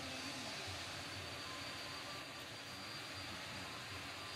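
Steady outdoor background hiss with a faint, constant high-pitched whine running through it.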